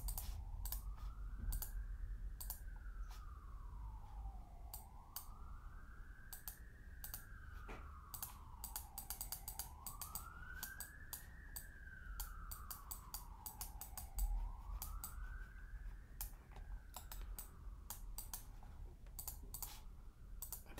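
An emergency-vehicle siren in a slow wail, its pitch rising and falling about four times, faint under frequent computer mouse and keyboard clicks.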